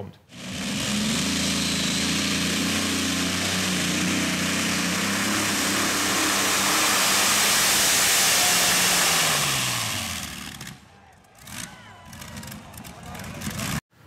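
A competition tractor-pulling tractor running flat out as it drags the weight sled down the track: a loud, steady engine note over heavy noise. About ten seconds in the engine note falls and the sound drops away.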